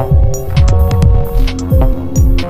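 Electronic techno/IDM music: a deep kick drum that drops in pitch on each hit, about two to three times a second, under sharp high percussion ticks and held synth notes.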